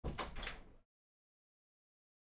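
A door being moved: a brief scraping rush with a couple of knocks in it, over in under a second.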